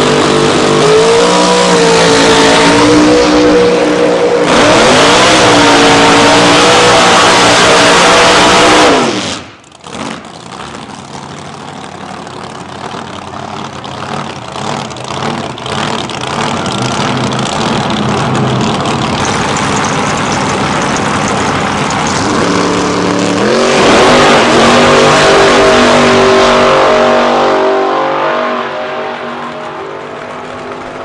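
Outlaw Anglia drag cars' V8 engines revving loudly, the pitch rising and falling. After a sudden cut there is a quieter, rougher stretch of engine and tyre noise during the smoky burnout. About 24 seconds in comes a loud launch, the engine note climbing and then fading away down the strip.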